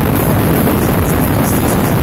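A motorcycle ridden at speed: a loud, steady rush of wind on the microphone mixed with engine and road noise.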